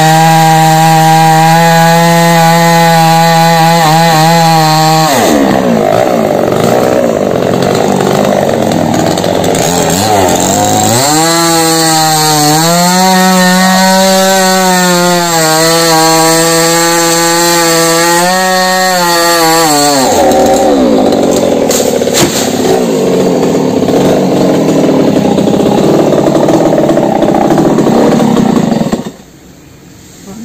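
Two-stroke chainsaw cutting a felled coconut palm trunk. Its engine note runs steady at high revs, then breaks up into rough noise with the pitch dropping as it works in the wood about five seconds in and again from about twenty seconds, revving freely in between. It cuts off about a second before the end.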